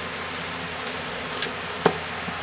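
A utensil stirring and mashing thick, hot rebatched soap paste in a large cooker, over a steady hiss, with two sharp knocks against the pot in the second half.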